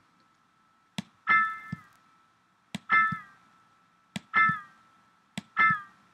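A sampled note played by the Kontakt sampler, triggered four times about every 1.4 s, each just after a short click. Each note sounds briefly and bends down in pitch as it ends, because the pitch bend wheel both triggers note 60 at its top position and bends the pitch as it is released. A faint steady high tone runs underneath.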